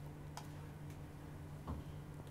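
A few faint, small clicks over a steady low hum of room tone.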